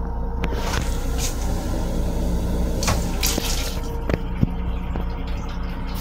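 Toilet in an M7 railcar restroom flushing, a rush of water over the car's steady running rumble, with a few sharp knocks; the rush fades about two-thirds of the way in.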